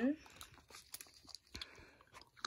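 Tape-covered paper crinkling and rustling softly as two laminated paper shapes are handled and pressed together, with a few faint clicks.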